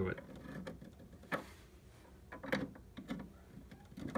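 Light plastic clicks and taps as a plastic dungeon gate is worked into place in a toy playset: a few short, faint clicks, one about a second in and a small cluster in the middle.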